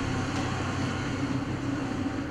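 Steady low drone of a delivery truck's engine running, from a video played over a hall's loudspeakers.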